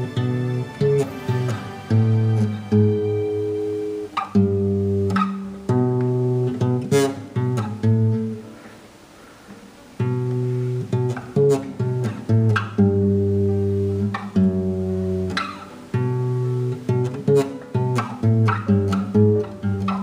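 Guitar riff picked one note at a time on a single string, moving up and down the neck. The phrase is played twice, with a short pause about eight seconds in.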